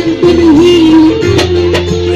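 Live band music through a PA: a woman sings long, wavering held notes over a steady bass line, with a couple of sharp drum hits in the second half.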